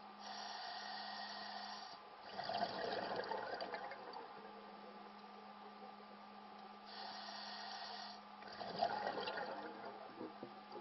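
Scuba diver breathing through a regulator, heard twice: a steady hiss on each inhale, then a rush of bubbling exhaust on each exhale, with a faint steady hum underneath.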